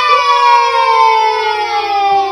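A single long pitched tone, rich in overtones, gliding slowly down in pitch and cutting off suddenly near the end, over a low steady hum: a title-card sound effect.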